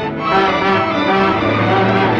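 Orchestral film background music led by violins, playing held notes in several parts at once, with a new phrase coming in just after the start.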